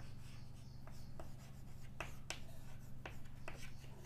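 Chalk writing on a blackboard: a string of short, irregular taps and scratches as letters are formed, over a low steady hum.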